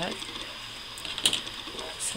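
Scissors snipping through ribbon: two quick cuts about a second in, the second one louder.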